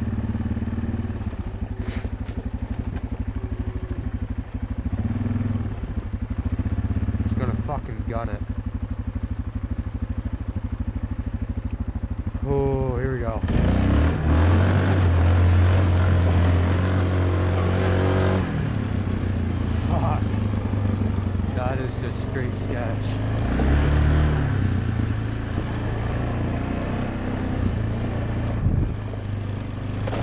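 Yamaha single-cylinder ATV engine running at low revs, then revved hard about 13 seconds in and held at high revs for several seconds as the quad pushes through a snowy water crossing under load, before easing off with another brief surge later.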